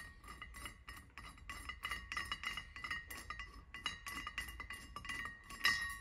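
Rapid, light metallic clicks, several a second, over a faint ringing tone, as the clamps of a roller pin removal tool are loosened on an aluminium Can-Am secondary clutch.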